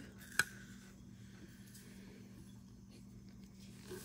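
A single sharp tap about half a second in, as a plastic measuring cup of sugar is emptied into a metal pot; otherwise quiet, with a faint steady low hum.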